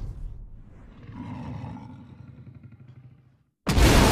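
Trailer sound design: a low growling rumble fades away to a brief silence, then a sudden loud crash of smashing debris comes near the end.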